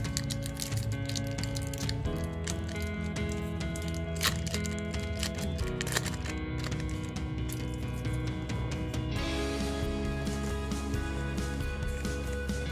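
Background music whose chords change every few seconds, over the crackle of a foil booster-pack wrapper being torn and handled, with the sharpest crackles about four and six seconds in.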